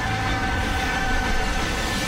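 Film sound design: a steady electronic whine holding two pitches over a low rumble and hiss.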